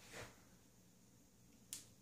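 Near silence: room tone, broken by one short, sharp click near the end.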